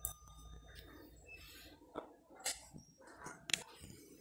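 Faint handling noise from a handheld phone: scattered small clicks and knocks over a low rumble that fades out about halfway through, with faint background sound from a busy shop.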